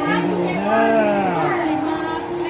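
Several people talking and calling out over one another, one voice drawn out in a long rise and fall through the middle.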